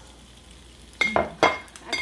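Kitchen dishware clinking: about a second in, three or four sharp clinks with a brief ring, over a faint steady sizzle of bacon on a hot griddle.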